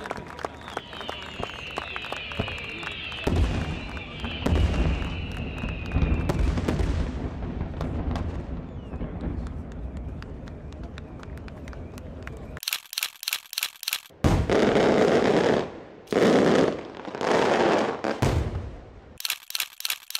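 Last fireworks crackling and popping over a crowd clapping and cheering, with high whistles sliding slowly down in pitch in the first few seconds. About two-thirds of the way through, the sound cuts abruptly to a different stretch of short, loud pulsing bursts.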